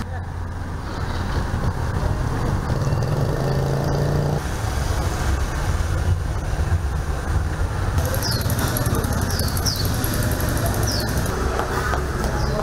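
Urban street ambience: a constant rumble of road traffic and motorbikes with indistinct voices in the background. A short steady engine drone comes a few seconds in, and a few short, high, falling chirps sound near the end.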